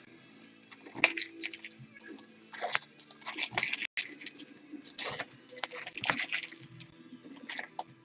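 Foil trading-card pack wrappers crinkling and tearing in the hands as packs are ripped open, in irregular crackly bursts.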